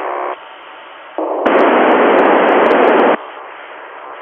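Hiss from an FM amateur satellite downlink on a ham radio receiver. A loud burst of static starts abruptly about a second and a half in and cuts off suddenly about two seconds later, with a few sharp clicks, between quieter stretches of weaker hiss while no station is talking.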